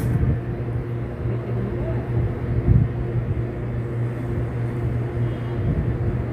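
A steady low hum with a faint rumbling haze over it, and one brief louder low bump a little under three seconds in.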